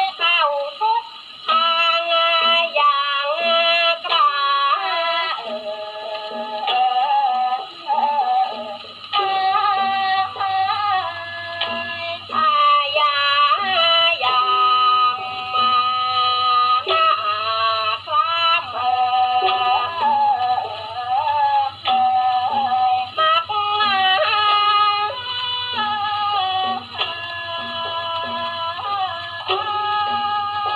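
An old 78 rpm shellac record played on an acoustic portable gramophone with a metal soundbox: a Thai vocal recording, a woman singing a wavering, ornamented melodic line in short phrases with brief pauses.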